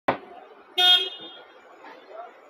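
A vehicle horn gives one short honk just under a second in, over a steady background hum of street traffic. A sharp click opens the clip.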